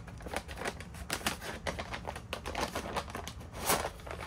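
Packaging being handled as an exhaust silencer is unwrapped: a cardboard sleeve and crumpled packing paper crackling and scraping in a quick, irregular string of clicks, with one louder scrape near the end.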